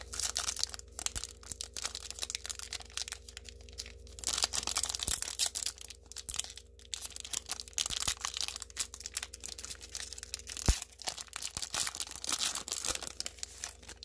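Foil trading-card pack wrapper being torn open by hand and crinkling in bursts of crackle, with short pauses between. About three-quarters of the way through there is one sharp snap, the loudest sound here.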